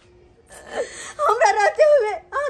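A woman's voice: a quick breath about half a second in, then high-pitched vocalising that rises and falls in pitch in short pieces, in a wailing, whimpering tone.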